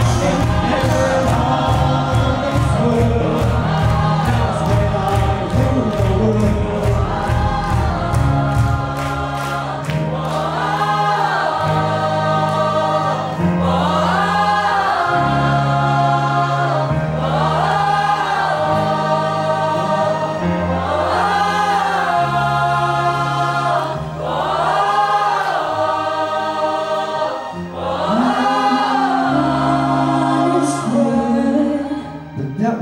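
A large mixed group of voices singing together like a choir, with band accompaniment. The voices move in long rising-and-falling phrases over steady low notes. A fast, steady percussion beat plays until about nine seconds in, then drops out, leaving the voices and the held chords.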